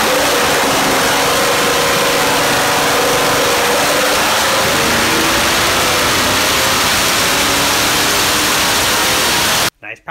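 2008 LY6 6.0-litre LS V8, fitted with 799 cathedral-port heads and a Comp cam, running loud at wide-open throttle on an engine dyno during a power pull. It stops abruptly near the end.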